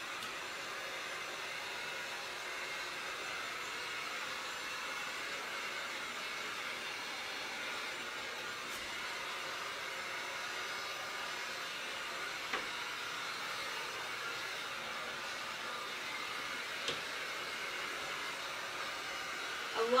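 Handheld electric heat gun blowing hot air at a steady, unchanging pitch and level, drying freshly brushed white paint on a wooden door.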